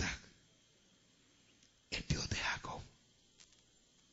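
A man's speaking voice: the end of a word right at the start, then a short unclear phrase about two seconds in, with faint room hiss between.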